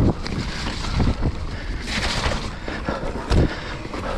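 Wind buffeting the microphone and tyres rolling over a dirt trail as a full-suspension mountain bike is ridden downhill, with frequent knocks and rattles from the bike over bumps. A heavier low thump comes a little over three seconds in.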